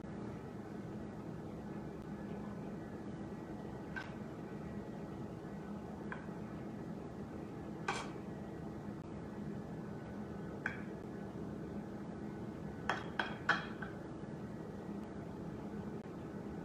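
Scattered light clicks of a small kitchen knife against a metal baking sheet as it slices through dough rolls down to the pan, several coming close together near the end, over a faint steady hum.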